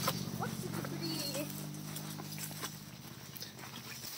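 Footsteps on a leaf-littered forest path, with scattered snaps and rustles of brushing through undergrowth, over a low steady hum that fades out about three seconds in.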